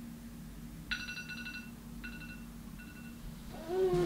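Electronic alarm beeping: one longer tone about a second in, then two shorter, fainter ones about a second apart. Near the end a louder sound with a pitch that bends up and down sets in.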